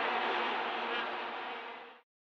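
Steady stadium crowd background noise with a faint underlying drone, fading away and stopping at the end.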